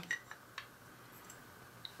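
A few faint clicks of hard plastic model-kit parts knocking together as they are handled and fitted by hand, unevenly spaced, with the last near the end.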